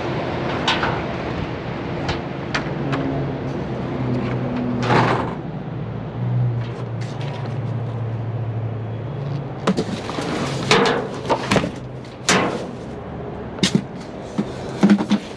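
Plastic lid of a front-load dumpster being lifted and pushed back, giving scattered knocks and a few louder clatters about five, ten and twelve seconds in, over a steady low hum.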